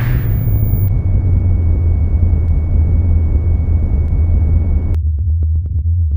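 Deep, steady synthesized rumble from an intro sound effect, with a hiss and a thin high tone over it. The hiss and tone cut off suddenly about five seconds in, leaving the low drone under faint electronic clicks as synth music begins.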